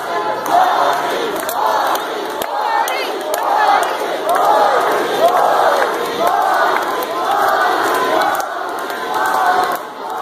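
Wrestling crowd chanting a short shouted phrase in rhythm, over and over about once a second, many voices together in a reverberant gym.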